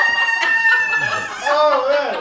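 A person's high-pitched squeal that rises and then holds one long shrill note for about a second and a half, followed near the end by a shorter wavering cry, sounding much like a rooster's crow.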